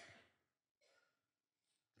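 Near silence in a pause in a man's speech, with a faint breath a little under a second in.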